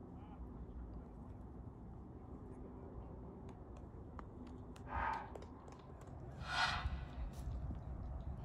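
Two short bird calls about a second and a half apart, the second louder, over a low steady outdoor background.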